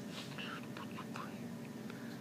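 A woman's whispered, breathy mouth sounds: short hissy puffs and sibilant bursts without a clear voiced tone, over a steady low room hum.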